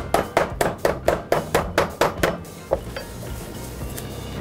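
Metal meat mallet pounding chicken breast through plastic wrap on a plastic cutting board: quick even blows, about four a second, that stop a little past halfway.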